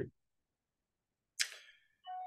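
Near silence on gated video-call audio, broken about a second and a half in by a short breathy hiss from a speaker that fades quickly.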